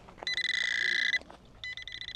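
DR.ÖTEK MT9 Mini kids' metal detector sounding its detection alert over buried metal: a high buzzing beep held for about a second, then starting again more faintly near the end.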